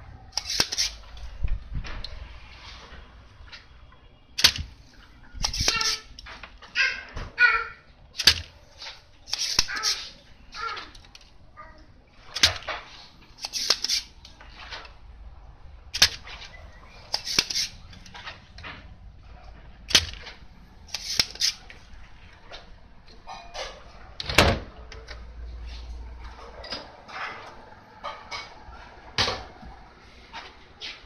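Spring-loaded desoldering pump (solder sucker) being fired again and again while the flyback transformer's pins are desoldered from a CRT TV board: a sharp snap about every four seconds, with shorter rasping noises between the snaps.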